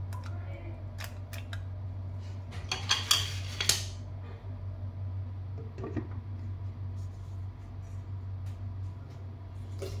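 Handling noises in an electric steamer pot: a few light clicks, then a loud crinkling clatter of aluminium foil and plastic steamer basket about three seconds in, and a knock near six seconds as the lid goes on. A steady low hum runs underneath.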